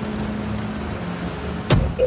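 A steady low mechanical hum with a constant drone, like an engine or machinery running, then a single short thump near the end.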